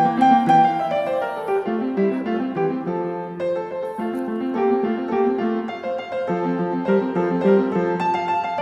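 Background piano music, a quick run of notes over a sustained lower part.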